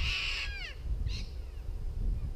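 A bird calling: a loud call that falls in pitch over about half a second, then a shorter call about a second in.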